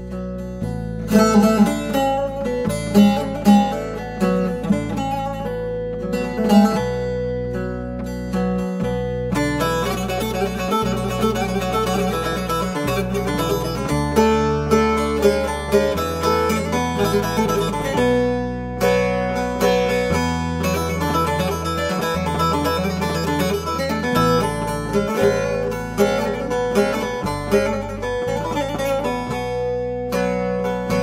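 Bağlama (long-necked Turkish saz) playing an instrumental passage of a Turkish folk melody in quick plucked notes, growing busier and faster about ten seconds in. Low sustained bass notes run beneath, changing every second or two.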